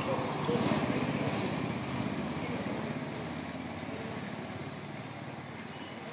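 Outdoor street ambience: vehicle traffic with distant voices, a steady wash of sound that slowly fades.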